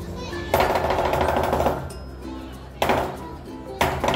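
Lion dance percussion: crashing cymbals and gong in a loud wash beginning about half a second in, a second crash near the three-second mark, then sharp strikes starting near the end as the drumming picks up.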